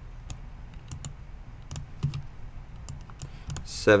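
Irregular, scattered clicks of a computer mouse and keyboard keys, about a dozen short taps.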